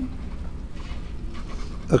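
Felt-tip marker writing on paper: faint scratchy strokes over a steady low hum.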